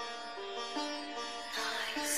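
Background music: a quiet melody of held, plucked-string notes, changing about every half second, with a hissing riser building in the last half second.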